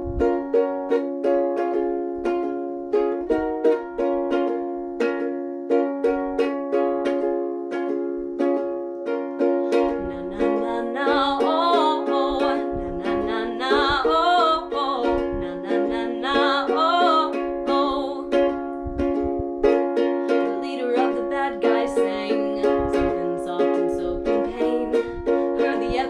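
Acoustic ukulele strummed in a steady rhythm, its chords ringing. From about ten seconds in, a voice sings a wordless wavering melody over it for several seconds, then the strumming carries on alone.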